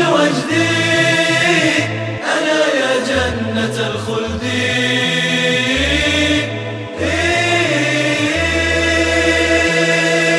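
Closing passage of an a cappella Arabic nasheed: layered male voices chanting a long, drawn-out melody over a low voice-made bass line that steps between notes.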